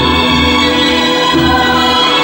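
Loud music with choir-like singing over sustained chords and a moving bass line.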